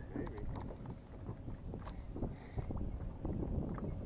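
Fishing reel being cranked during a fish fight: scattered light clicks and taps over a low rumble of wind on the microphone.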